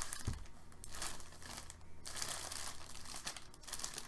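Clear plastic bag crinkling in irregular bursts as a jersey wrapped in it is handled.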